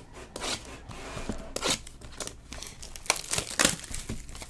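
A sealed trading-card hobby box being torn open by hand: its plastic wrapping crinkling and ripping in irregular short bursts, loudest near the end.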